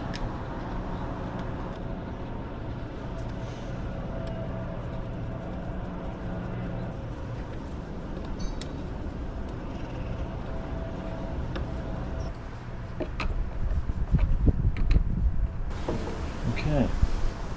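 A steady engine drone, as of a road vehicle running nearby, with a few light clicks from a hand screwdriver driving screws into a plastic bracket. Low rumbling bumps come in over the last few seconds.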